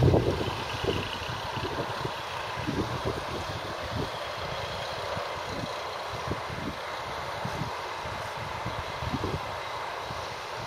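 New Holland 8360 tractor running with a McHale F5500 round baler working behind it, a steady mechanical hum, with gusts of wind buffeting the microphone.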